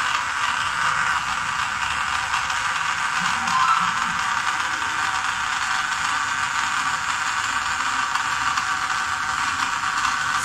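Small DC gear motor driving a hobby conveyor belt, running steadily with a constant whirring hum.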